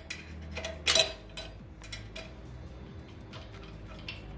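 Small metal clinks and ticks of a wrench working the steel nuts and studs of a Harman burn pot as they are snugged down. The sharpest clink comes about a second in, with a few lighter ticks after.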